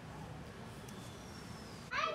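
A faint steady background hiss, then, near the end, one short, loud cat-like meow that falls in pitch.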